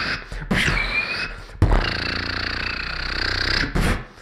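A beatboxer's voice into a handheld microphone, holding drawn-out notes: a short one, then a longer low buzzing one of about two seconds, between the quick percussive hits.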